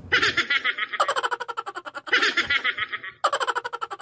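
High-pitched giggling laughter in four evenly spaced bursts about a second apart, each a quick run of short pulses, repeating like a looped laugh sound effect.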